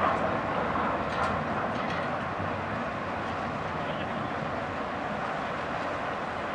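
Steady mechanical rumble of the Blue Star Paros passenger ferry's engines and thrusters as it manoeuvres in harbour, heard at a distance, with a few faint ticks between one and two seconds in.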